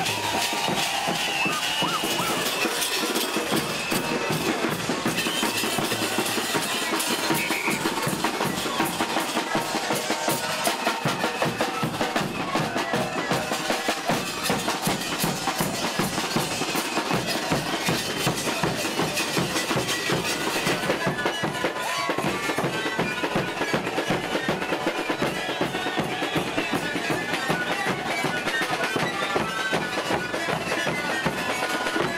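Andean zampoña band playing live: panpipes over a steady beat on large bass drums struck with sticks.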